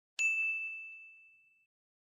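A single bright "correct answer" ding sound effect, struck once just after the start and ringing out, fading away over about a second and a half.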